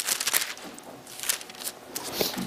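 Thin Bible pages rustling as they are turned to a new passage, in a few short, crisp rustles.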